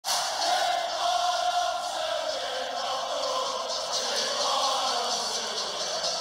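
Intro sound clip: a dense, crowd-like roar mixed with music, sliding slowly down in pitch.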